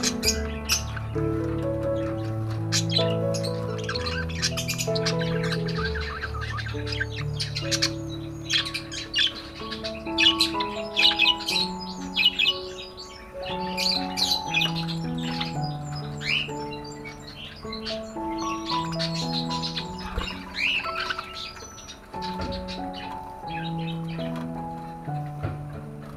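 A flock of budgerigars chattering in quick, high chirps and squawks, busiest around the middle, over slow background music with long held notes.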